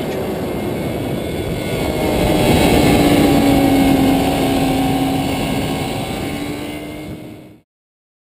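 BMW S1000RR inline-four race-bike engine at speed, heard onboard with wind rush. The engine note holds steady and swells about two seconds in, then eases off and fades out near the end.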